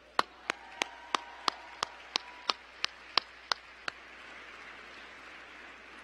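One person's hand claps close to the microphone, a steady beat of about three claps a second that stops about four seconds in. Behind it, audience applause fills a large hall and carries on to the end.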